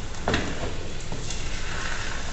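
Beaten egg and potato frying in oil in a pan, a steady sizzle, with a few light clicks of a spatula against the pan.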